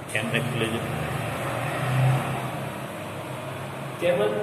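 A motor vehicle's running hum, growing louder to a peak about two seconds in and then easing off, with a short spoken word at the start.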